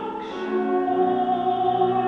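Operatic soprano singing; after a brief break between phrases she holds a long steady note from about a second in.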